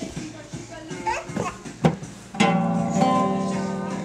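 Classical guitar strummed once about halfway in, its open strings ringing together and slowly fading. Before it come a small child's babble and a sharp knock.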